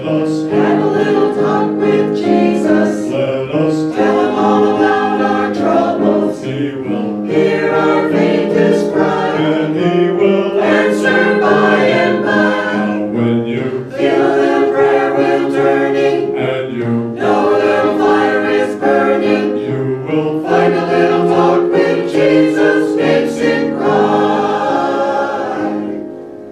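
Mixed choir of men's and women's voices singing a gospel song in parts, with piano accompaniment.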